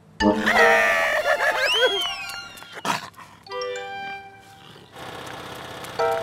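Cartoon sound effects over music: a loud comic burst with whistle-like rising and falling glides in the first two seconds, a sharp hit about three seconds in, a few short plucked notes, then a light music bed.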